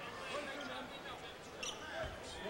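Faint arena background noise from a basketball game: crowd and court sounds, with a brief sharp high sound near the end.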